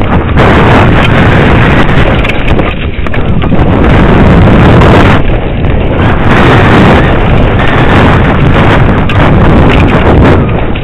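Downhill mountain bike clattering and rattling as it is ridden fast over a rough trail, a dense run of small knocks, with wind buffeting the helmet camera's microphone.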